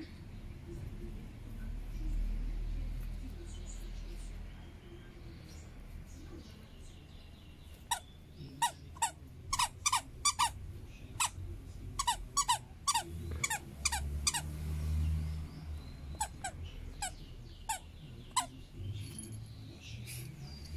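Squeaker inside a plush toy squeaking as a dog bites down on it: many short, high squeaks, some single and some in quick runs, starting about eight seconds in and stopping shortly before the end.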